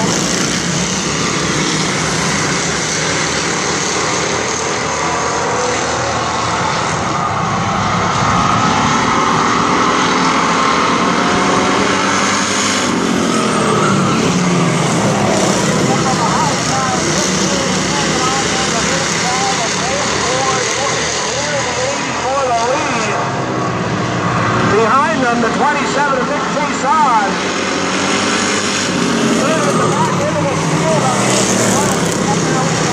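A pack of stock cars racing on an asphalt oval, their engines running together in a loud, continuous drone. Engine notes rise and fall as cars pass close by, more strongly in the second half.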